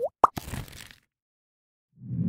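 Bubble-popping sound effects for a logo animation: two quick, pitched plops with a fast pitch glide, followed by a short soft swish that fades out about a second in.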